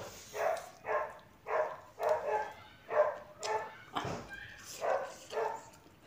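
A dog barking repeatedly, about two barks a second, with a short break around four seconds in where a single knock is heard.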